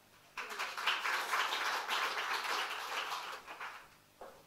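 Audience applause welcoming a speaker to the stage: many hands clapping together, starting a moment in, holding steady and dying away near the end.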